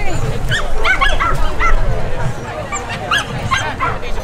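Dogs barking: several short, high yips in two clusters, one in the first second and a half and another after about three seconds. Crowd chatter runs underneath.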